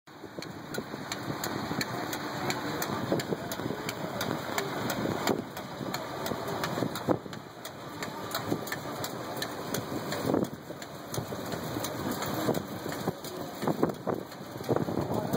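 1916 Williams gristmill with 30-inch stones running and grinding grain, belt-driven by a 1946 Farmall A tractor whose engine runs steadily under the load. A regular ticking about three times a second runs through the machinery noise.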